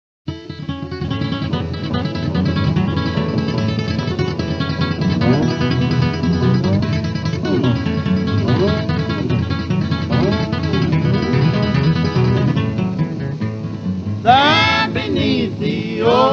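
Instrumental opening of an old-time country song on guitars, with notes that slide up and down in pitch. A man's voice starts singing about two seconds before the end.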